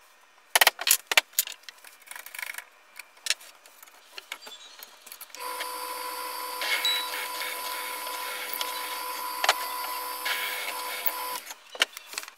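Wooden pieces knocking together as they are handled, then a bench drill press motor running steadily for about six seconds with a hum and whine before it is switched off and stops.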